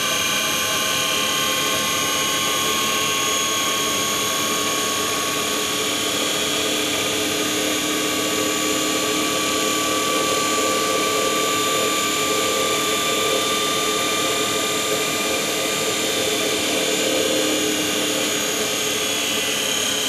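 Large 6 kW DC motor running steadily at speed with a steady whine of several held tones.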